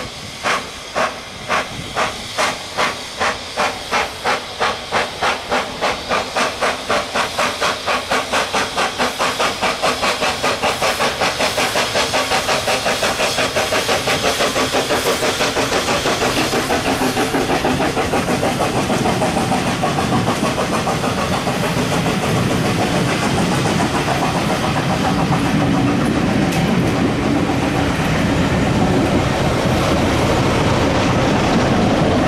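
SECR P Class 0-6-0 tank locomotive No.323 working a train under steam, its chuffing exhaust beats quickening from about two a second until they run together into a continuous hiss as it passes close by. The coaches then roll past with wheel-on-rail clatter, and a Class 33 diesel locomotive at the tail comes by near the end.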